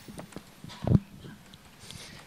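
Handling noise from a handheld microphone as it is picked up: a few light knocks and one louder thump about a second in.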